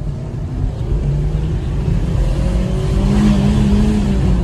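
Maruti Suzuki Dzire's engine accelerating, heard from inside the cabin over low road rumble. Its pitch climbs and it grows louder toward the end.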